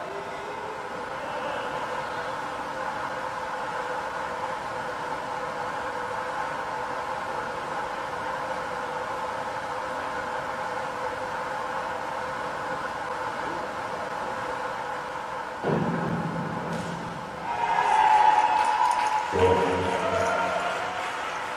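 Steady hum of an indoor pool hall. Near the end, a springboard dive: a sudden clatter as the board is sprung, voices shouting, and knocks as the diver enters the water.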